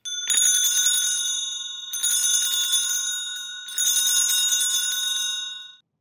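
Altar bells (Sanctus bells) rung in three jangling peals of about two seconds each, marking the elevation of the chalice at the consecration.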